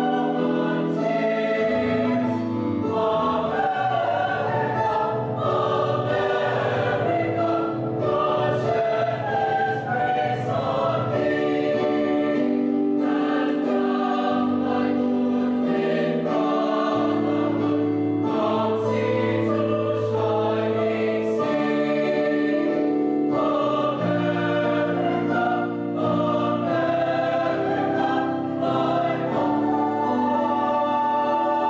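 A mixed choir singing in parts, holding chords that change every second or two.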